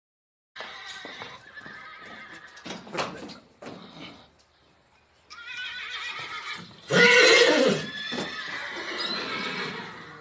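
A horse whinnying. The loudest call comes about seven seconds in, lasts just under a second and falls in pitch, with quieter, broken sounds before it.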